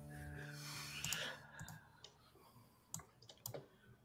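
A few faint, irregular clicks of a computer mouse and keyboard, spaced unevenly over a few seconds. Soft background music fades out in the first second.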